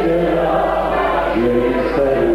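A roomful of people singing a song together, many voices holding sung notes in a slow melody.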